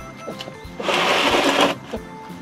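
Dry mixed grain feed rattling in a plastic bowl as the bowl is set down, one loud rattle lasting about a second, over background music.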